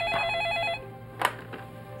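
Electronic telephone ringer sounding one warbling ring, a rapid alternation between two tones, which stops just under a second in. A single short click follows about half a second later.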